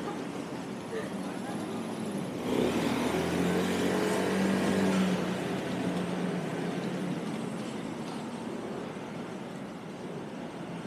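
A small motor scooter's engine running as it comes up the street, getting louder about two and a half seconds in and fading away after about five seconds, over street hubbub with distant voices.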